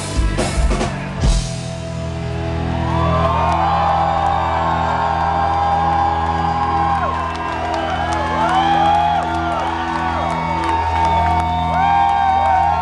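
Rock band ending a song live: the last drum hits in the first second or so, then a held low chord ringing out. Over it, from about two seconds in, a concert crowd cheers and whistles.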